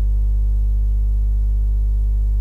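Loud, steady electrical mains hum with a buzzy ladder of overtones, unchanging throughout.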